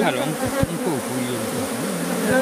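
Honeybees buzzing loudly around an opened Kenya top-bar hive, individual bees flying close past the microphone so the buzz swoops up and down in pitch.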